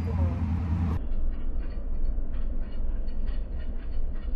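Steady low rumble of a car heard from inside its cabin, with faint irregular clicks. About a second in, the sound turns abruptly duller and muffled.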